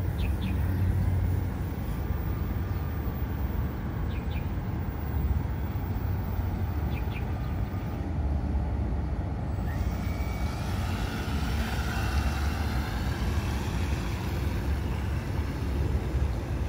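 Radio-controlled model boat's motor revving up about ten seconds in, a rising whine and hiss as the boat speeds off across the water, over a steady low rumble.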